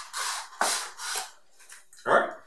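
A cardboard inner tray being pushed and slid out of its cardboard box sleeve: two scraping, rubbing swishes of card on card, each about half a second long.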